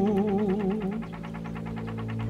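Music: a solo voice singing a slow Javanese chant with wide vibrato, its held note fading about a second in, over a steady low drone and a quick, even pulsing accompaniment.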